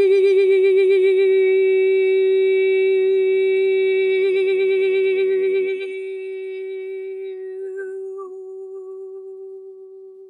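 A woman's voice doing vocal frequency-healing toning: one long held note with a slight wobble, and a fainter lower tone beneath it for about the first half. After that the note thins and slowly fades away.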